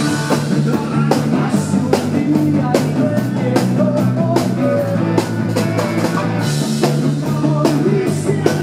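A live rock band playing: a man singing over electric guitar, bass and a drum kit.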